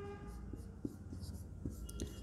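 Marker pen writing on a whiteboard: faint scratching strokes with a few light ticks as the tip meets the board.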